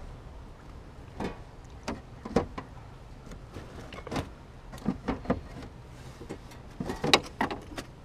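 Junk being rummaged through by hand in a steel dumpster: scattered knocks, clicks and clatters of plastic items, cardboard and odds and ends being shifted, in small clusters with the loudest clatter about seven seconds in.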